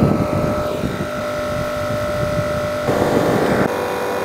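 A portable 12-volt air compressor, clipped to the car battery, running steadily as it pumps a tyre back up after it was let down for driving on sand. It makes a steady motor hum with a thin whine, briefly rougher and louder about three seconds in.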